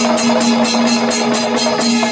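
Panchavadyam temple ensemble playing: timila drums and ilathalam hand cymbals beat a fast, even rhythm of about four strokes a second, over a steady held low tone.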